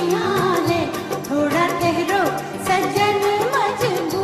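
An old Hindi film song: singing with gliding, ornamented melody over instrumental accompaniment and a steady beat.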